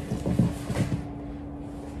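A grappler's knees, bare feet and gi scuffing and thudding softly on a vinyl mat and a grappling dummy as he spins around on top of it, with a few soft thumps in the first second.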